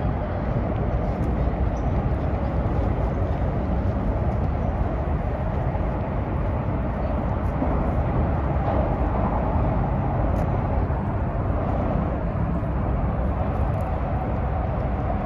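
Steady low rumble of road traffic, with no breaks or separate events.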